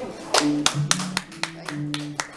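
Applause from a small group: a few people clapping in scattered, uneven claps starting about a third of a second in, just as the final strummed guitar chord has died away.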